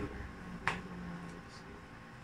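A single sharp click about two-thirds of a second in, over quiet room background.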